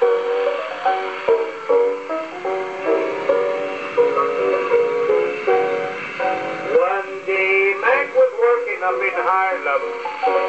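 A 1901 acoustic disc record playing through the oak horn of a Victor Type III horn gramophone: a male singer with piano accompaniment, in the thin, narrow sound of an early acoustic recording.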